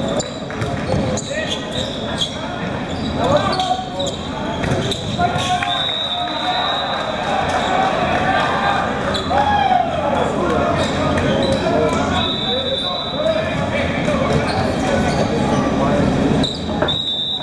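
Volleyball match in a large echoing gym: the ball is struck in sharp hits during a rally, over continuous shouting and calling from players and spectators.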